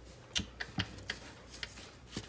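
About half a dozen light, irregular clicks and taps from handling torn paper scraps and a paintbrush on a craft table.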